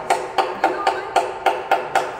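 Wooden mallet striking the handle of a carving gouge as it cuts into a log: a steady run of blows about four a second, each with a short ring.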